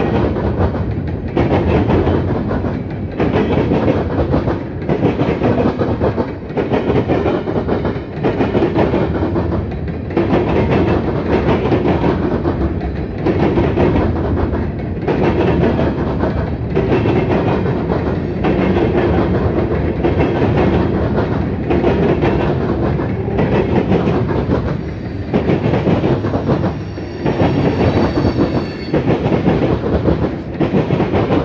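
A Norfolk Southern freight train's covered hoppers and tank cars rolling past close by, steel wheels clacking over the rail joints in a steady rhythm, the loudness swelling and dipping every second or two.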